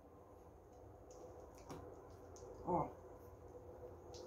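Faint stirring of thick cake batter with a spatula in a glass bowl, mixing in baking powder, with a few light clicks over a low steady hum.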